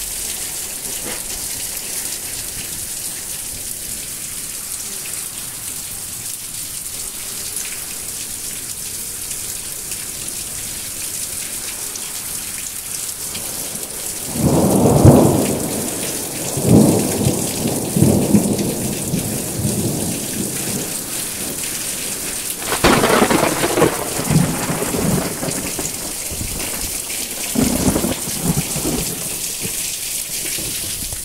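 Rain falling steadily on a tiled roof, heard from beneath it, with thunder rumbling: a long roll about halfway through, another about three-quarters through and a weaker one near the end.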